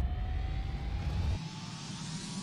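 Fly-by sound effect for an animated logo intro: a low rumble and rushing hiss under a slowly rising tone, like a jet or meteor streaking past. The rumble drops away about two-thirds of the way through.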